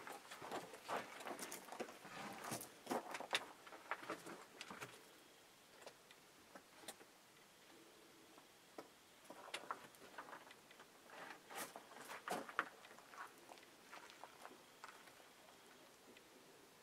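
Faint, scattered clicks, knocks and rustles of people moving about and handling equipment in a small log hut, busiest in the first few seconds and again later, with a quiet stretch between.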